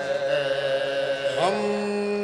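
Soz, a Shia mourning lament, chanted by unaccompanied male voices in long held notes, moving to a new, lower held note about one and a half seconds in.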